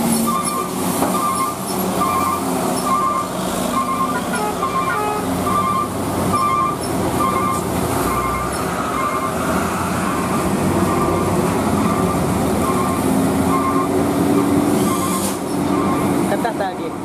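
Heavy diesel trucks labouring up a steep hairpin grade under load, their engines rising in pitch near the end. A train of short high beeps repeats through the sound.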